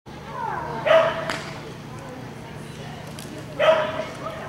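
A dog barking twice, once about a second in and once near the end.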